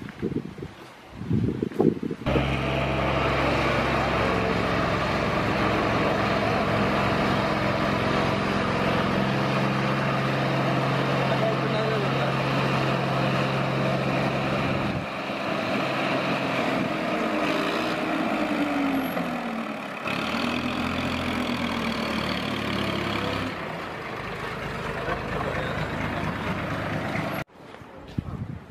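Coconut-husk coir fibre processing machines running: a steady electric-motor hum with several held tones under a dense mechanical rattle. It starts a couple of seconds in, changes pitch and character about halfway through and again later as different machines are heard, and cuts off just before the end.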